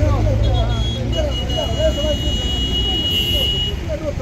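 Bystanders' voices talking over a low rumble of engines and traffic. A steady high-pitched tone sounds for about two and a half seconds, starting about a second in.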